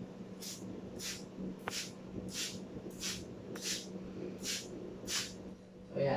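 Handheld plastic trigger spray bottle spraying liquid disinfectant onto a table top: about eight short sprays, roughly one every two-thirds of a second.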